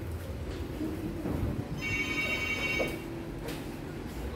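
A high, ringing electronic tone about a second long, starting a little before the middle, over a steady low hum.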